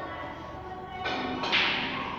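A snooker shot being played: one sharp click of cue and ball about one and a half seconds in, over background music.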